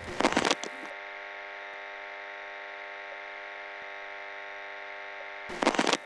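Analog video-glitch sound effect: a short burst of crackling static, then a steady electrical buzzing hum for about four and a half seconds, then another crackle of static near the end.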